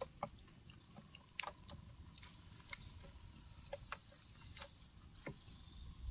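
Faint, irregular small clicks and taps, about a dozen in six seconds: a chipmunk's claws scrabbling over a plastic lid among food packages.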